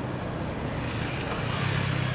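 Fire engines' engines running at the scene: a steady low engine hum over street noise, getting louder in the second half.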